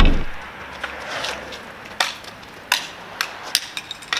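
Background music fades out, then come several separate sharp clacks of hockey sticks striking on asphalt, spaced roughly half a second apart in the second half.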